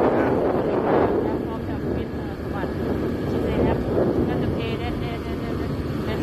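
Small motorbike running along a village lane, with wind rushing over the microphone, heaviest in the first second. Faint talking comes through partway through.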